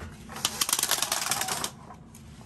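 Wooden slat blinds being raised, the slats clattering against each other in a fast run of clicks that lasts just over a second.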